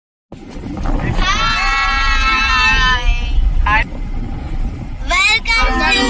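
Children's voices in a long, high, drawn-out call lasting about two seconds, followed by shorter cries near the end, inside a moving car with a steady engine and road rumble underneath.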